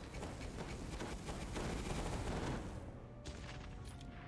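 Wish Master video slot sound effects: a dense electric crackling as lightning zaps from the wild symbols and the win counts up, thinning out about three seconds in.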